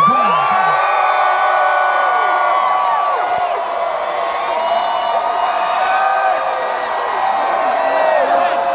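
Large crowd cheering, with many voices holding high-pitched screams and whoops over one another.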